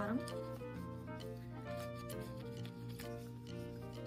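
Soft background music with steady held notes, and a few faint clicks from a glass jar being handled in rubber-gloved hands.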